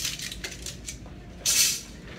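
Lengths of aluminium screen-frame profile being handled: light metallic clicks and clinks, then a sharp scraping hiss about one and a half seconds in as the strips slide against each other and are laid on the bench.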